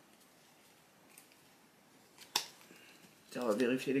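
Quiet handling of a deck of playing cards, with one sharp snap of the cards a little past the middle and a couple of faint clicks before it. A man starts speaking near the end.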